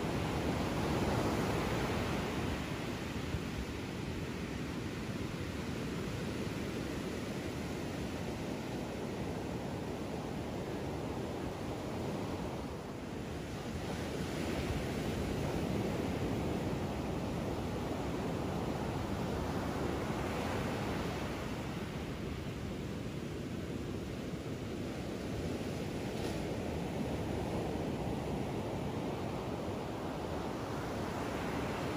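Ocean surf breaking and washing up a sandy beach: a steady rush that swells and eases as each wave comes in.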